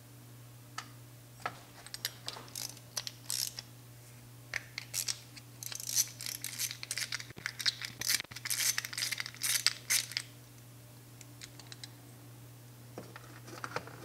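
Small metal carburetor parts clicking and clattering together and against a metal tray as an SU HS4 carburetor's float chamber lid is taken apart by hand and with a small tool. The light clicks come in scattered groups, thicken in the middle, then die away about ten seconds in, over a faint low steady hum.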